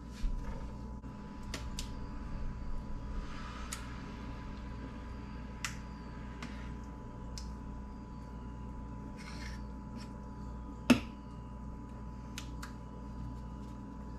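A metal spoon clinking and scraping in a bowl as burrito filling is scooped into a tortilla: scattered light clicks, with one sharper clink late on, over a steady background hum.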